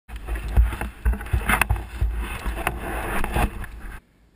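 Wind buffeting the microphone of a camera mounted on a downhill mountain bike as it rides over rough dirt and rocks, with sharp clacks and rattles from the bike over bumps. It cuts off suddenly at the end.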